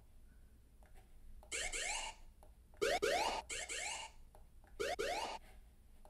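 The 'Lazer' sound-effect sample from the edjing Mix app's sampler: synthesized laser zaps, each a quick rising sweep, repeating about every second from a second and a half in. Its volume shifts as the crossfader, which the sampler is linked to, is moved.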